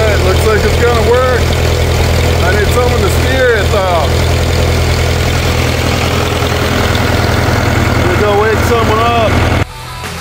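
1960 International B275 tractor's four-cylinder diesel engine running steadily at a low, even speed, with a man's voice talking over it in places. The engine sound stops abruptly near the end.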